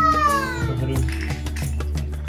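A toddler's high-pitched, meow-like squeal that rises then falls in pitch over about the first second, with background music underneath.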